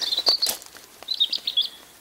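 A bird chirping: a quick run of short high chirps at the start and another run about a second in.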